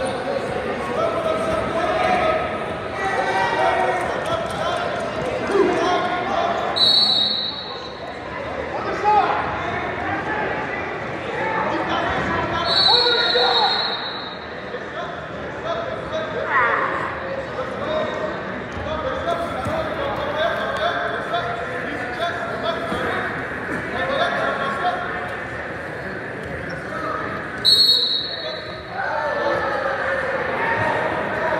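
Voices of spectators and coaches echoing in a school gym during a wrestling bout, with three short, high referee's whistle blasts spread through it, the last near the end.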